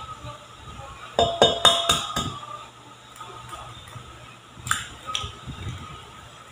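Kitchenware clinking: a cluster of sharp, ringing clinks about a second in. Near the end come two sharp taps as an egg is cracked against a stainless steel mixing bowl.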